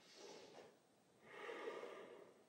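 Near silence with two faint breaths of a person standing still after coming up from a forward bend: a short one just after the start and a longer one in the second half.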